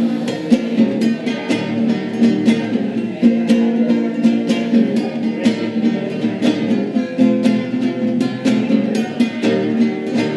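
Nylon-string classical guitar strummed fast in a steady rhythm, about three or four strokes a second, an instrumental passage with no singing.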